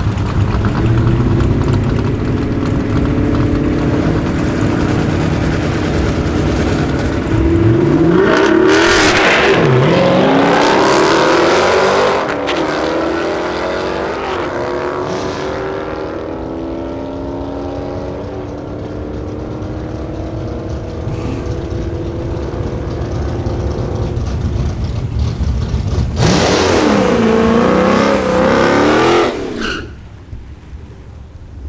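Two V8 muscle cars, a Dodge Challenger and a Chrysler 300 SRT8 with its Hemi V8, idling at the drag-strip start line, then launching hard about seven seconds in with a sharp rising rev. Both engines run at full throttle and fade as the cars pull away down the quarter mile. Near the end, a loud burst of a hard-revving V8 with spinning tyres from a burnout.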